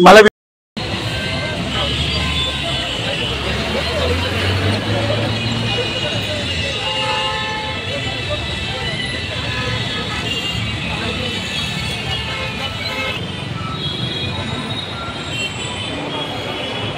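Toll-plaza din: a crowd of men talking and calling out over traffic, with vehicle horns sounding and engines idling.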